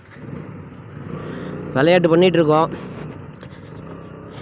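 KTM Duke 125 single-cylinder engine running as the motorcycle rides off over a rough dirt track, the noise building over the first couple of seconds. A man's voice cuts in loudly about two seconds in, for under a second.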